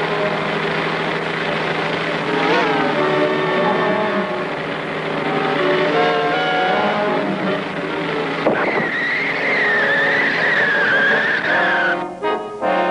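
Cartoon sound effect of a speeding car's engine running. About two-thirds of the way in, a long wavering tyre squeal cuts in and slowly falls in pitch.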